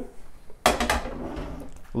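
A short clatter of kitchen items being handled, about two-thirds of a second in, followed by softer handling noise.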